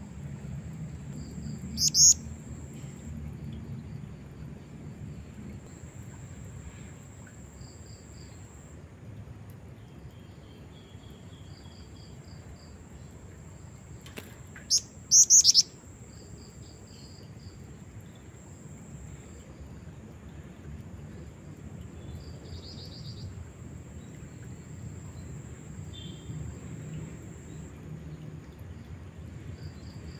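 Female black-winged flycatcher-shrike (jingjing batu) calling: soft high chirps come again and again, with a loud, sharp high-pitched call about two seconds in and a quick burst of loud calls about fifteen seconds in.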